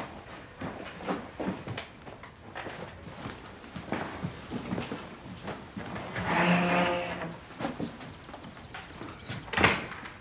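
Soft footsteps and small knocks on a wooden floor, then a wooden wardrobe door creaking open for about a second; a sharper knock comes near the end.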